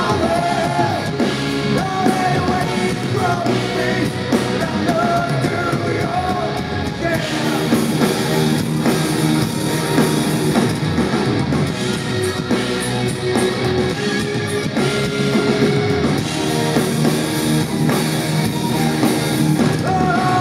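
Live rock band playing: electric guitars, bass and drum kit with a man singing lead.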